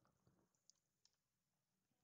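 Near silence, with two very faint clicks of computer keyboard keys being pressed.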